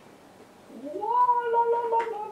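A woman's voice glides up and holds a long sung note, starting about three-quarters of a second in: a wordless exclamation of delight, carried on into further held notes.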